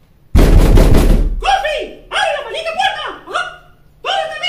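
A loud burst of noise just after the start, lasting about a second, then a cartoon character's voice making a run of short non-word yelps, each dropping in pitch.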